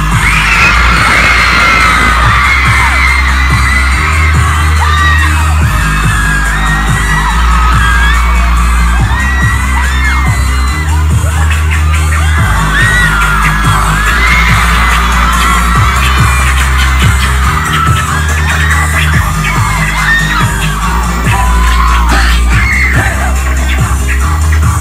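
Loud live pop music from a club PA: a heavy bass line with a steady beat and no vocals. A crowd screams and cheers over it throughout.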